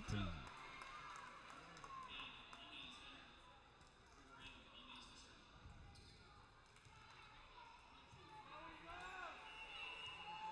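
Near silence: faint voices echoing in a large gymnasium.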